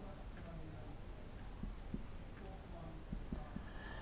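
Marker pen writing on a whiteboard: faint strokes, with a few light ticks in the second half.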